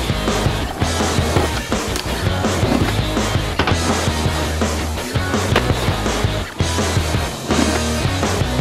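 Skateboard rolling over rough pavement, with sharp knocks from the board popping and hitting at intervals, under loud rock music.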